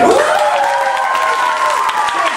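Several voices cheering with a long rising 'woo', held at one pitch for about two seconds, over applause, at the end of a beatbox-and-guitar number.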